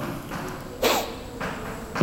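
A pause in a man's lecturing, with steady background hiss and one short vocal sound from him, a syllable or breath, about a second in.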